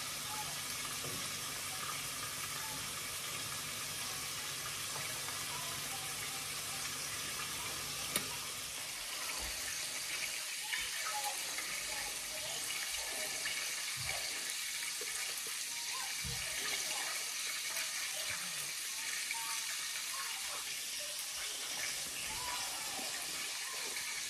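Saltfish fritters frying in oil in a skillet: a steady sizzling hiss, with a low hum under it for the first several seconds.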